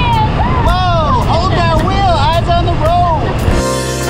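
Wind rumbling on the microphone of a moving open golf cart, with two people calling out in long, rising-and-falling whoops. A funky music track with a beat comes in near the end.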